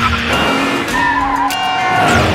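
Title-sequence music mixed with car sound effects: a performance car's engine and tyres squealing.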